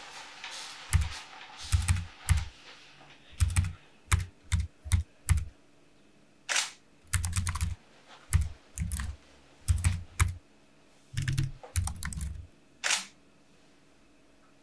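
Typing: irregular keystroke clicks, many with a dull thud under them, coming in uneven bursts of a few at a time. A soft hiss is heard in the first couple of seconds.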